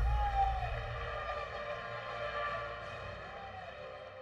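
Synthesized logo-sting tone: a sustained, multi-layered electronic chord with a brief pitch bend near the start, slowly fading away.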